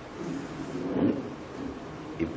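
Steady room hiss during a pause in speech, with a faint low sound swelling briefly about a second in.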